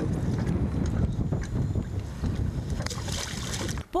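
Wind rumbling on the microphone out on open water, a steady low buffeting with no engine note, and a brief higher hiss about three seconds in.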